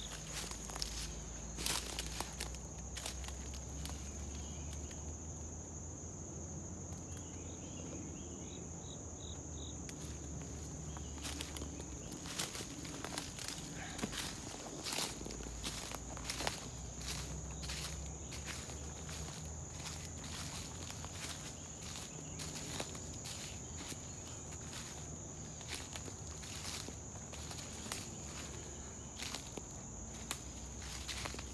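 Footsteps crunching through dry leaf litter on a forest floor, irregular steps throughout, over a steady high-pitched insect chorus.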